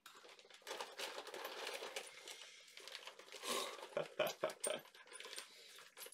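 Small plastic parts bags rustling and crinkling as they are handled, with irregular light clicks and clinks of small spare parts knocking together inside them.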